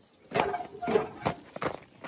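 Footsteps on gravel as a person gets down from a tractor and walks off: about four sharp steps in quick succession, starting a moment after a brief hush.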